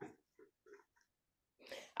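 Near silence in a pause in a woman's speech: a few faint, short soft sounds, then a quiet in-breath just before she speaks again.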